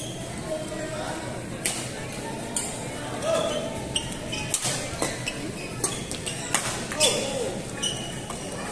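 Badminton rally: a string of sharp racket hits on a shuttlecock and short shoe squeaks on the court floor, over background voices.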